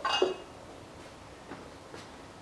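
A brief clink of kitchenware right at the start, then two faint taps about a second and a half in and at the end, as an oil bottle is handled over a pan on the stove.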